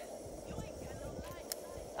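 Portable camping gas stove burning under a pot: a steady, even rushing sound, with a faint voice in the middle and a single sharp click about one and a half seconds in.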